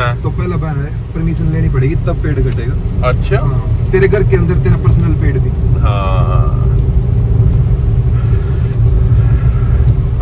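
Car interior road noise while driving on a rain-wet road: a steady low rumble from the engine and tyres, with voices talking at times beneath it.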